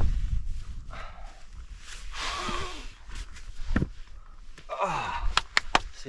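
A hiker breathing hard, out of breath from a steep climb, with two long breaths about two seconds in and about five seconds in. Near the end, boots knock sharply on rock as he gets up and steps off.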